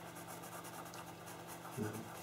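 Pastel pencil scratching over paper in a fast run of short, light shading strokes.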